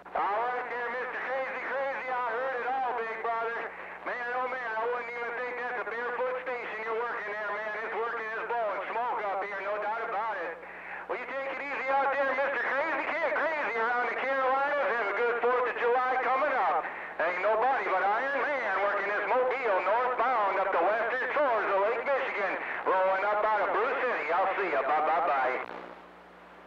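A voice transmission received over a CB radio on channel 28, starting abruptly and cutting off near the end as the sender unkeys, with a steady low hum from the receiver underneath.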